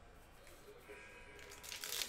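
Faint crinkling of a foil Panini Prizm basketball card pack being handled, building from about halfway through and loudest near the end.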